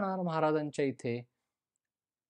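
Speech only: a man talking in Marathi, breaking off a little over a second in.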